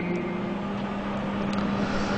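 A steady low hum with a broad background rush from an amplified sound system, with no voice on it.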